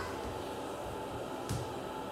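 Quiet room background with one faint, sharp tap about one and a half seconds in.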